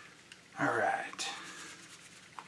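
A man's short wordless vocal sound about half a second in, falling in pitch and ending in a breathy exhale. Under it, faint rubbing of a microfiber cloth on the glossy paint of a plastic model car body.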